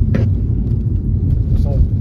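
Steady low rumble of a car driving at speed, heard from inside the cabin, with a brief snatch of voice near the end.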